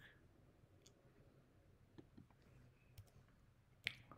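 Near silence with a few faint computer mouse clicks, the loudest just before the end.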